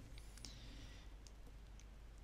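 Near silence: faint room tone with low hum and a few faint clicks.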